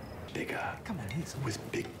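Quiet, low speech, close to a whisper, in short phrases.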